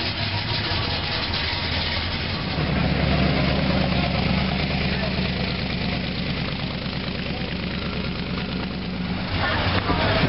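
Low, steady engine rumble of a T-bucket hot rod with an exposed engine and side headers driving slowly past. It grows loud about two and a half seconds in and fades near the end as the roadster moves on. A classic coupe and an old pickup roll by at walking pace before and after it.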